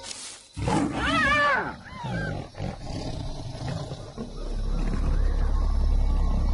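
A lion attacking a hyena: a sudden loud snarl about half a second in, then a high, wavering animal cry that rises and falls, and a few shorter calls. A low, steady rumble comes in near the end.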